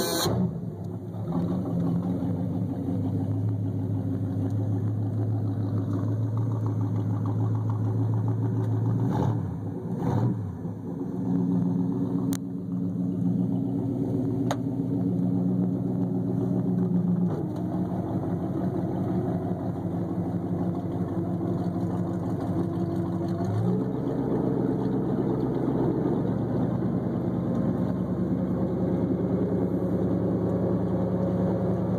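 Inboard engine of a Hacker-Craft mahogany runabout running steadily just after starting. Its note wavers briefly about a third of the way in, then steps up in pitch about three quarters of the way through as the boat gets under way.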